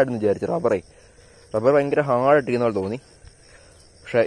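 A man speaking in two short stretches, with a faint steady high-pitched insect chorus heard in the pauses.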